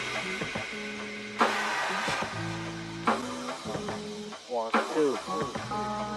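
Background music in a quieter passage: held chords that change every second or two with a sharp attack, and a falling pitch glide about five seconds in.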